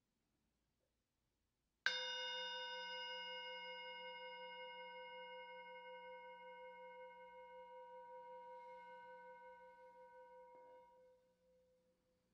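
A singing bowl struck once about two seconds in, ringing with several clear tones that fade slowly with a gentle wavering, then stopped about a second before the end.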